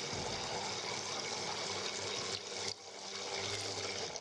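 Immersion blender running in a tall beaker, its motor whirring steadily as it churns and emulsifies an oil-and-vinegar dressing. The sound dips briefly a little past halfway, then picks up again.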